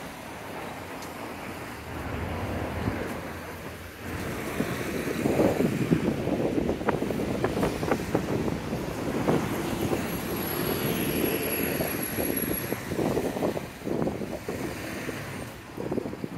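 Busy city road traffic: cars and a motor scooter passing close by, getting louder about four seconds in.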